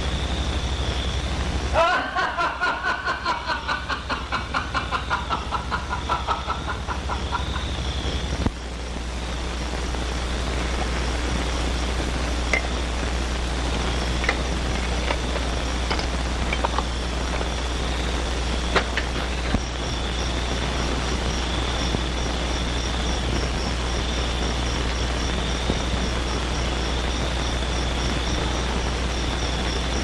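Steady low hum and hiss of a worn 1950s film soundtrack with a thin steady whistle tone and scattered crackles. About two seconds in, a wavering pitched sound pulses about four times a second for some six seconds, then cuts off abruptly.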